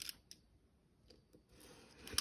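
Near silence with a few faint clicks and a soft rustle near the end, from hands handling a shrink-wrapped album.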